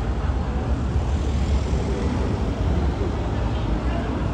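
Road traffic on a city street: a steady low rumble of passing cars.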